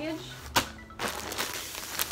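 A single knock as a package is grabbed from the pile, then the crinkling of a plastic poly mailer being handled.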